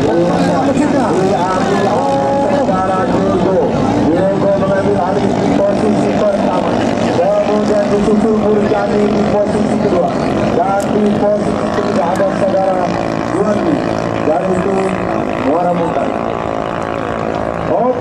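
Several 6–7 horsepower ketinting longtail racing boat engines running flat out together, their overlapping whines rising and falling in pitch as the boats race and pass.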